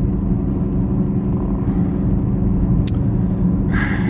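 Car driving along a highway, heard from inside the cabin: a steady low road and engine rumble with a faint even hum. A single short click about three seconds in.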